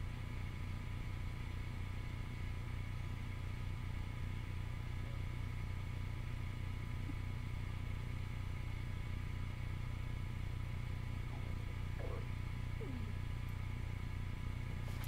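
Steady low electrical hum with faint steady higher tones, unchanging throughout; background noise of the recording setup with no distinct events.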